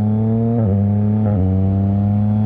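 Yamaha MT-09 inline-three engine running through a straight-piped Mivv X-M5 exhaust with no catalytic converter or silencer, pulling steadily on the road. Its note climbs gently, with two brief dips in pitch about half a second and just over a second in.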